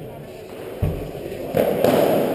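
Padel ball impacts on an indoor court: a dull thump just under a second in, then two sharp knocks close together near the end, the loudest sounds here.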